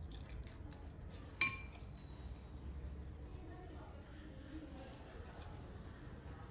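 Eating noodles with a fork: faint slurping and chewing, with one sharp, ringing clink of the metal fork against the tableware about one and a half seconds in.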